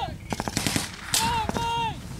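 Small-arms fire from a section of soldiers firing rapidly: a quick cluster of shots in the first second, then more single shots, with a man shouting over them.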